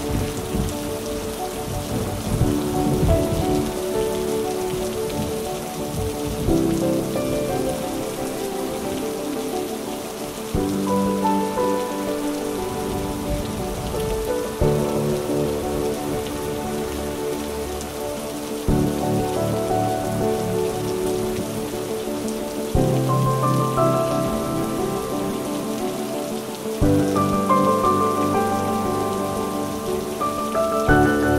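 Steady rain falling on paving stones, with soft, slow piano music underneath whose sustained chords change about every four seconds.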